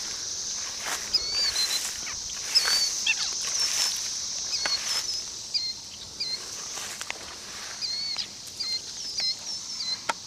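Pond-side summer ambience: a steady high-pitched insect drone, with a small bird repeating short chirping notes every second or so, and the soft rustle of steps through tall grass.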